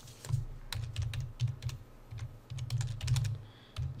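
Typing on a computer keyboard: irregular key clicks in short runs with brief pauses.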